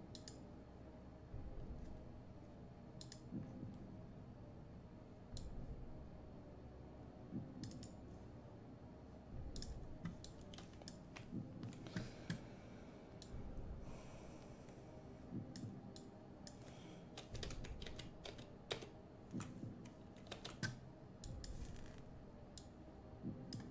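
Faint, scattered computer keyboard typing and mouse clicks, with a few soft low thumps in between.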